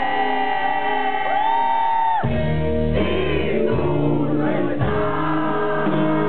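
Live acoustic rock song: a male lead singer holds a long high note, then about two seconds in the band's deep low end comes in under more sung lines, with guitar accompaniment.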